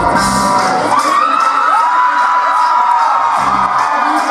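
Live band music in a large hall, the low bass and drums dropping out for about three seconds from half a second in, while a crowd cheers and whoops.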